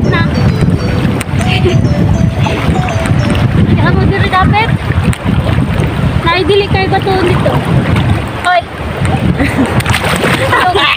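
Wind buffeting a phone microphone over river water, a heavy low rumble throughout, with voices talking at intervals.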